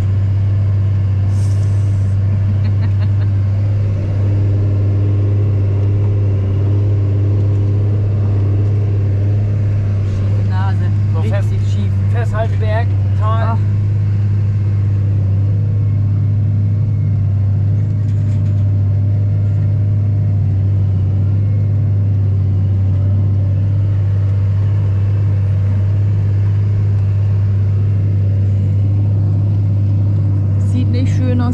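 Fendt 926 Vario tractor's six-cylinder diesel engine running steadily under load, heard as a deep, even drone inside the closed cab.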